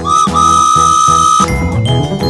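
A high whistle tone over children's background music: a short blip, then one long held note of about a second that stops about a second and a half in, with the music's beat running underneath.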